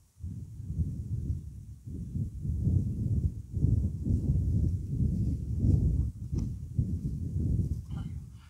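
Wind buffeting an outdoor microphone: a low rumble that swells and fades in uneven gusts.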